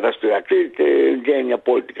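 Speech only: a voice speaking Greek without a break, sounding thin and narrow, like a telephone line.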